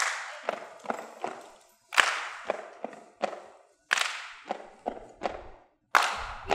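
A group clapping and slapping out a rhythm: a loud, sharp clap about every two seconds, with quicker, duller hits between them, each ringing out with an echo.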